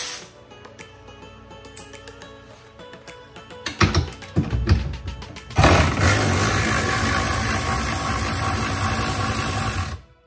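Cordless power ratchet spinning a nut off the tow-eye mount: a few short bursts about four seconds in, then about four seconds of steady running that cuts off suddenly. Background music plays underneath.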